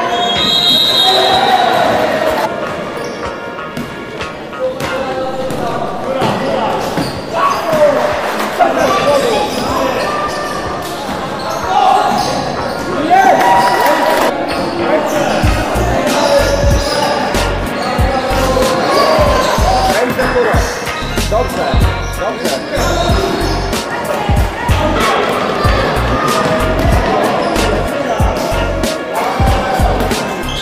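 Basketball bouncing on a wooden gym floor during play. The thumps are frequent from about halfway on, mixed with children's shouts and calls echoing in a large sports hall.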